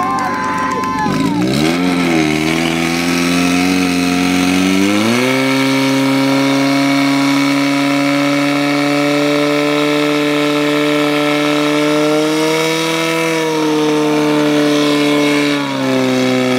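Portable fire pump engine revving up about a second and a half in, then climbing again to full revs about five seconds in and holding a high, steady note as it pumps water through the attack hoses to the nozzles. Its pitch rises a little late on and dips just before the end.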